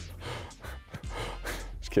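Soft, breathy laughter from a man: a few short puffs of breath and chuckles without words.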